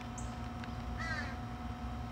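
A single short, harsh bird call, crow-like caw, about a second in, with a brief faint high peep just before it.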